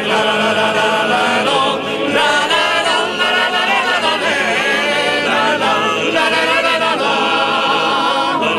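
A large group of trallalero singers, mostly men, singing unaccompanied Genoese polyphony together: many voices in a full, sustained chorus without a break.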